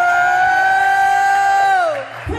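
One voice holding a single long, loud note, sliding up into it at the start and dropping away at the end.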